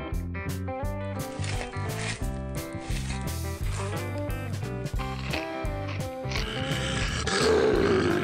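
Background music with a steady beat. From about six seconds in, an elephant's call, a rough, noisy cry, is laid over it and runs on to the end.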